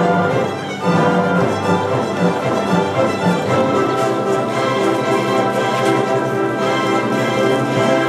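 Orchestral music with bowed strings prominent, playing sustained chords.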